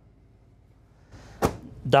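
An over-the-range convection microwave's door swung shut, latching with a single sharp clack about a second and a half in.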